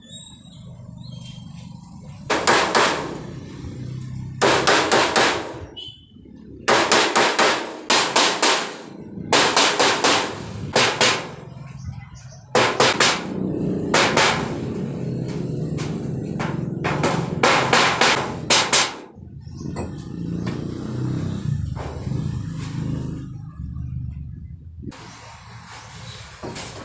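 A hammer striking a galvanized iron sheet in quick runs of several sharp blows with short pauses between, working the sheet to bend it. After about 19 seconds there are few blows, leaving a softer low sound, and another short run of blows comes near the end.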